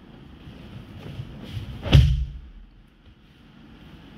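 A judo throw landing: a body thuds hard onto tatami mats about two seconds in, with a few lighter knocks and shuffles of bare feet and jackets on the mat before it.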